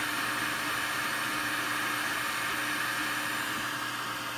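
Anycubic i3 Mega 3D printer running: the steady whir of its cooling fans, with a faint motor tone that breaks off and resumes.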